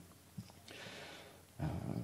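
A pause in a man's speech: a soft breath is drawn about halfway through, then a low, hesitant voice sound begins near the end as he resumes talking.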